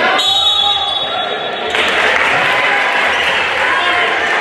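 Live sound of a girls' basketball game in a school gym: crowd and player voices over the ball bouncing on the hardwood floor. The sound jumps abruptly just under two seconds in.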